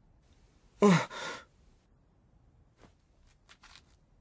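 A character's short voiced exclamation about a second in, a grunt or sigh falling in pitch. A few faint, brief swishes follow near the end.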